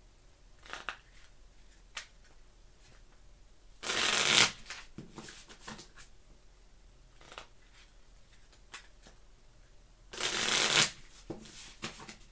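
A deck of playing cards being riffle-shuffled twice, each riffle a quick rattling burst of under a second, about six seconds apart. Between them are soft taps and clicks as the deck is squared up in the hands.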